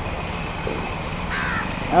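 A short bird call, a little over a second in, above steady street background noise.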